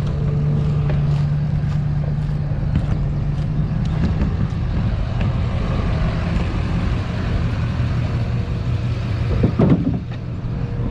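Motor vehicle engine running steadily as a low rumble. A steady hum sits over it for about the first four seconds, then fades.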